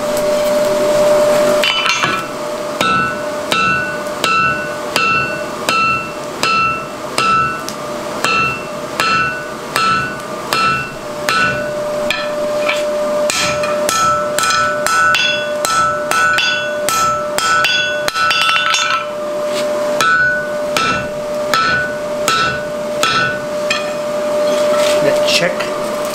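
Hand hammer striking a red-hot mild-steel bar on a steel anvil, upsetting the bar's end, each blow followed by a clear ring from the anvil. The blows come steadily at about one to one and a half a second, quicken to about two a second in the middle, and pause briefly twice.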